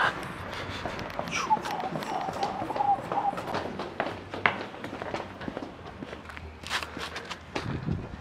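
Sneaker footsteps going quickly down outdoor concrete stairs, a fast, irregular series of taps and scuffs.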